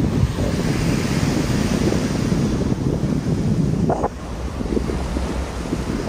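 Wind buffeting the microphone over small waves washing onto a sandy beach; the wind eases a little about four seconds in.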